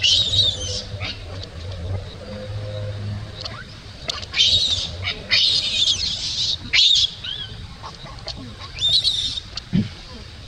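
Infant macaque giving high-pitched distress screams in about five short bursts, each half a second to a second long, as its mother puts it down on the ground.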